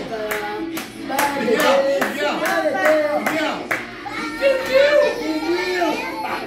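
A family group singing a birthday song together and clapping along in a steady beat, about two to three claps a second.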